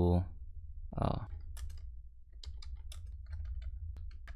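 Typing on a computer keyboard: a run of irregular key clicks that starts about a second and a half in, over a low steady hum.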